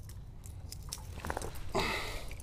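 Handling noise close to the microphone: rustling and small clicks as the camera is jostled, with a louder hissing rub near the end.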